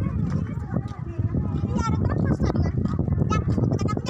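A group of children chattering and calling out together, some voices high-pitched, over a steady low rumble.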